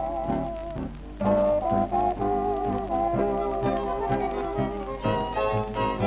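Tango played by a dance orchestra from a 78 rpm shellac record, a wavering melody line over a steady rhythmic accompaniment, with a constant low hum underneath. The music thins out briefly about a second in, then the full band comes back in.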